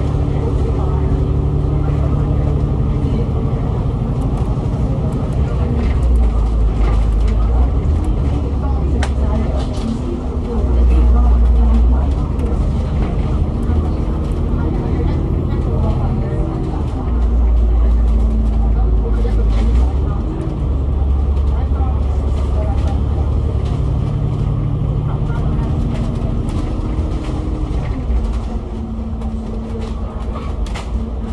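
Cummins ISL 8.9 diesel engine and Voith DIWA automatic gearbox of an Alexander Dennis Enviro500 MMC double-decker bus running, heard from inside the bus. Its pitch rises and falls several times as it takes the bends, with a deep rumble that swells for a few seconds at a time.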